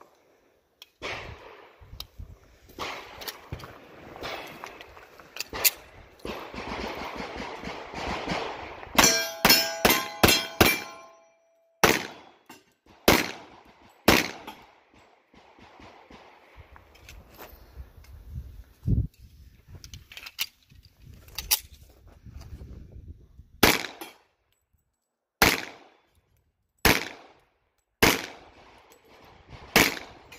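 Tisas 1911A1 Service .45 ACP pistol firing at steel plate targets. A rapid string of shots about nine seconds in is followed by the ring of hit steel, then slower single shots come every second or two. The first several seconds hold only quiet handling clicks and rustle.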